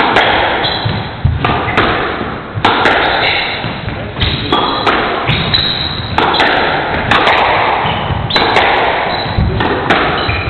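Squash rally: the ball is struck by rackets and smacks the walls about once every half second to second, each hit ringing in the court's echo. Short high squeaks of sneakers on the wooden floor come between the hits.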